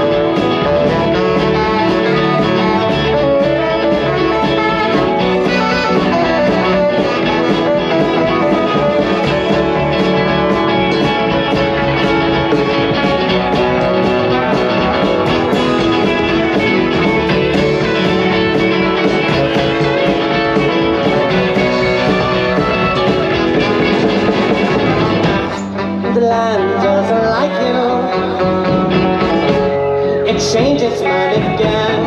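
Live band playing an instrumental passage with electric guitars, bass and drums. About 25 seconds in, the bass and drums drop out for a few seconds, leaving the higher instruments, then the full band comes back in near the end.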